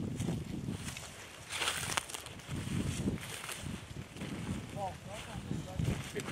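Hunters' footsteps swishing through dry field grass, with a brief rush of noise about one and a half seconds in and short drawn-out calls to the bird dog near the end. No gunshot.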